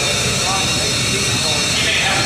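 People's voices talking over a steady, loud mechanical whir, with no separate knocks or hits.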